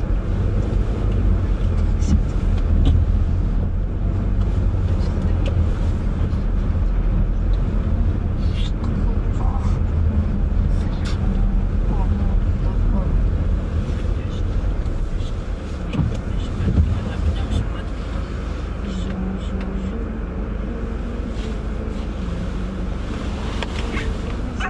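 Car interior noise while driving on a wet city street: a steady low rumble of engine and tyres with scattered light clicks. The rumble eases a little in the last few seconds.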